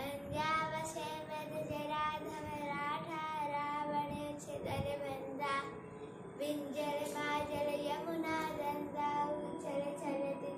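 A young boy singing a song solo, with several long held notes.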